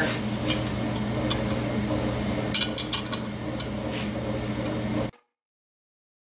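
Steel wrenches clinking against the two nuts locked together on a Harley-Davidson Twin Cam cylinder stud as the double nut is broken loose and turned off, with a few sharp metal clinks about two and a half to three seconds in and again near four seconds. The sound cuts off abruptly about five seconds in.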